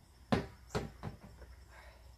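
Three short thumps, the first the loudest, as a large inflatable exercise ball is pulled away from a low stone wall and rolled across the patio pavers.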